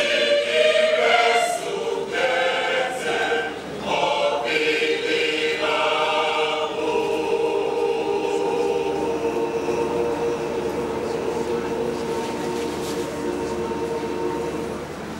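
Choir singing a motet in Ebira. The sung lines move for the first six seconds, then the choir holds one long chord to the end.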